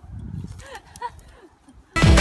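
Garden forks rustling and scraping through dry grass and manure as a compost heap is turned, with a few brief high calls sliding in pitch about halfway through.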